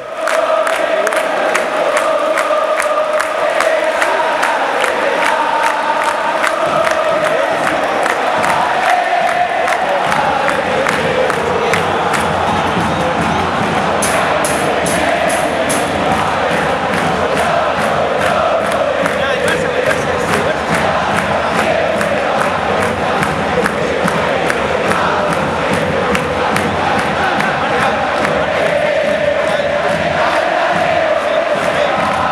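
Large stadium crowd of football supporters singing a chant in unison, loud and steady, over an evenly repeated beat.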